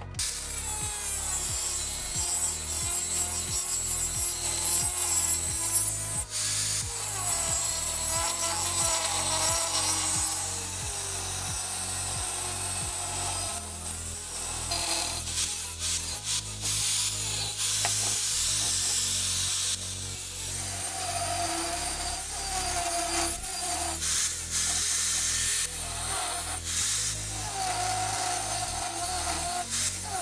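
Angle grinder with a cutting disc slicing through square steel tube: a loud, continuous grinding with the motor's whine rising and falling in pitch as the cut goes on. It starts abruptly at the beginning.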